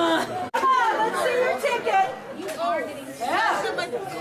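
Several voices talking at once in a large hall, with a brief dropout in the sound about half a second in.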